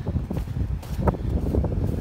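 Strong wind buffeting the microphone, an uneven low rumble, with a few short knocks about every half second.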